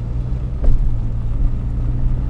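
Steady low drone of a car's engine and road noise heard from inside the cabin while driving, with one brief knock less than a second in.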